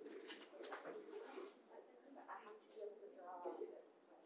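Faint, distant talking in a room, low and indistinct.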